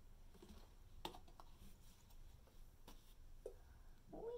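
Near silence with a few faint, sharp plastic clicks and taps as a squeeze bottle of green paint is handled.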